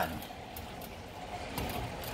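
Chicken pieces sizzling quietly in a frying pan over the heat, a steady soft hiss, with a few faint taps late on.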